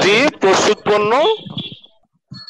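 Speech only: a person talking, trailing off near the end.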